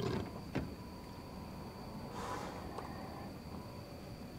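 Faint handling sounds on a boat deck: a couple of soft knocks near the start and a brief rustle about two seconds in, over a quiet steady background.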